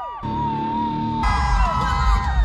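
Concert crowd screaming and whooping in a darkened arena. A little over a second in, a live pop-punk band starts playing loudly, with the screams carrying on over it.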